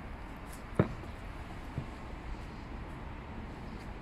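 Low, steady outdoor background noise, with one short click about a second in.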